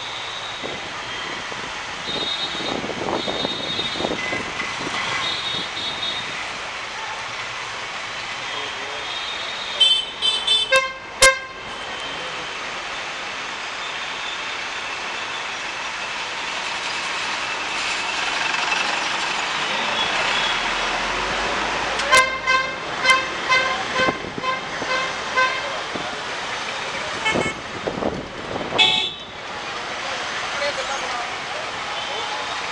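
Busy street traffic with repeated vehicle horn honks over a steady traffic hum: a cluster of short toots about a third of the way in, a longer run of quick honks about two-thirds in, and a couple more near the end.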